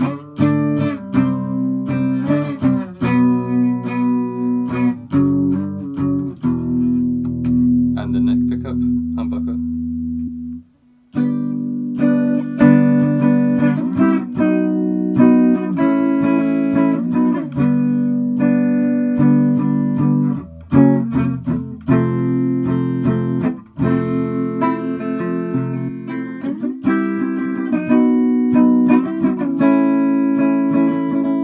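A black Swift electric guitar played clean through a Boss Katana amp on a single-coil pickup, with picked notes and strummed chords in a dark, woolly tone. About six seconds in, a chord is left ringing for several seconds. It stops briefly about ten seconds in, then the playing resumes.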